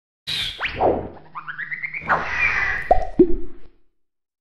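Cartoon sound effects for an animated logo: pops and quick pitch sweeps, a stepped run of short rising tones, and a swish. It ends with two sharp plops about a third of a second apart.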